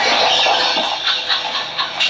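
Men laughing hard, in short repeated bursts.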